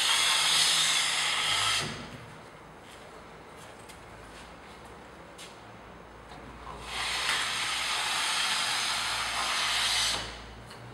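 A long-handled drywall taping tool scraping along a plasterboard ceiling joint through wet joint compound, in two hissing strokes: one in the first two seconds, another from about seven seconds on, with a quiet stretch between.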